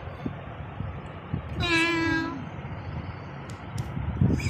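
A cat meowing once: one long, steady call a little under a second long, about halfway through.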